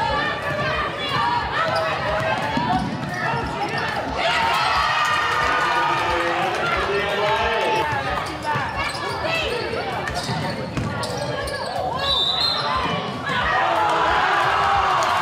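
Basketball dribbled and bouncing on a hardwood gym floor during live play, with sneakers squeaking and players and spectators calling out in the gym.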